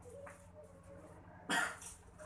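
A single short cough about one and a half seconds in, over a faint murmur of voices.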